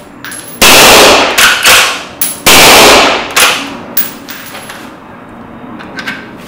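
Two shots from a Lynx 94 straight-pull rifle in .223 Remington fitted with a sound moderator, about two seconds apart, each ringing on briefly in the room. Between the shots and after the second, sharp metallic clicks as the straight-pull bolt is cycled.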